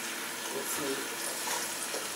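A steady, soft hiss of liquid in a cooking pot on the stove, just after blended tomato and vegetable purée has been poured in, with faint voices under it.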